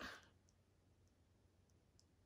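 Near silence: room tone, with two faint clicks.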